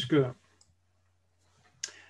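A single spoken word, then near silence broken by a few faint clicks. A sharper, brighter click comes near the end, just before speech starts again.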